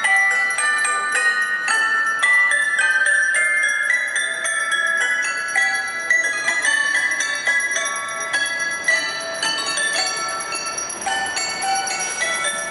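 Schoenhut toy grand piano played with both hands: a steady run of quick, bright, bell-like notes high in pitch, with almost no bass, from its hammers striking metal rods instead of strings.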